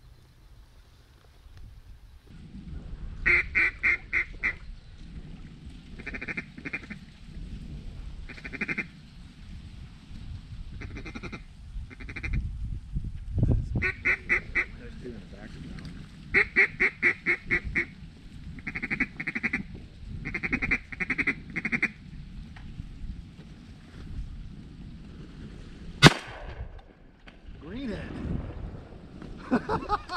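Mallard duck call blown in repeated strings of quick quacks, string after string, to draw circling mallards in to the decoys. About 26 seconds in, a single loud shotgun shot.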